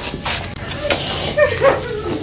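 A woman crying: short sniffling breaths, then a brief high whimper.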